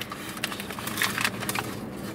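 Foil-lined paper sandwich wrapper crinkling and rustling as it is unwrapped by hand, a run of short irregular crackles.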